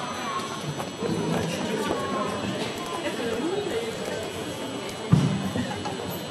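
Live rock band's stage between songs: scattered pitched sounds of instruments and voices over the open-air sound system. One loud low thump comes about five seconds in.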